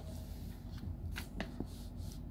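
A paper workbook page being turned by hand: a few short rustles and flicks of paper over a low steady hum.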